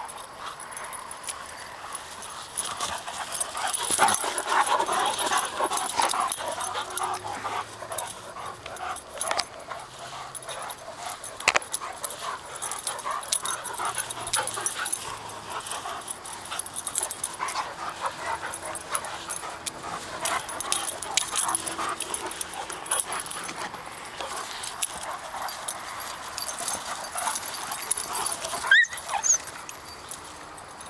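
Two dogs, a Great Dane and a smaller dog, vocalizing in irregular bursts through rough play. The vocalizing is loudest about four to six seconds in.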